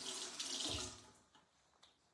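A water tap running briefly into a sink, a soft steady hiss of water that stops a little over a second in.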